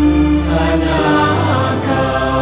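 Thai Buddhist devotional chant of praise, sung voices holding long notes with musical accompaniment over a steady low bass that shifts pitch about halfway through.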